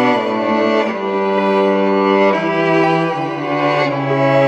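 Four multitracked violin parts playing sustained bowed chords together, the harmony moving about once a second.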